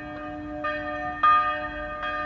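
Church bells ringing, their tones hanging on, with fresh strikes about two-thirds of a second and a second and a quarter in; the second strike is the loudest.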